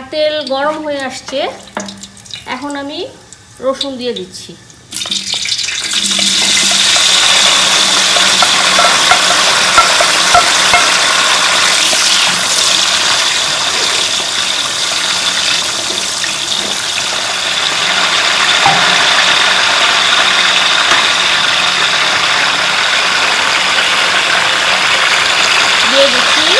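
Peeled garlic cloves frying in a large aluminium pot of hot oil with dried red chillies: a loud, steady sizzle that starts suddenly about five seconds in as the garlic goes into the oil, with a wooden spoon stirring through it. A woman's voice speaks briefly before the sizzle begins.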